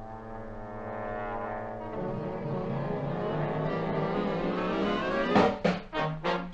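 Military brass band music: held brass chords that swell gradually, then short accented chords near the end.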